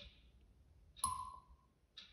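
Sharp, regular clicks about once a second, each with a short echo; the one about a second in is the loudest and rings briefly with a pitched tone.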